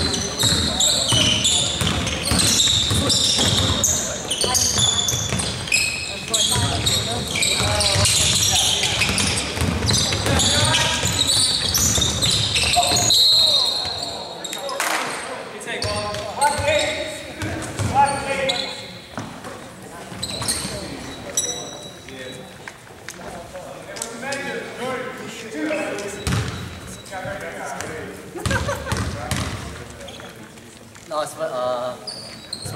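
Basketball being played on a hardwood gym floor: the ball bouncing, sneakers squeaking and voices calling out, echoing in the hall. The play sounds fade about halfway through, leaving scattered voices.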